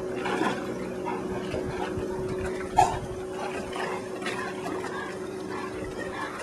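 Two dogs wading and splashing through shallow water, nosing underwater for a thrown rock, with one short sharp sound about three seconds in.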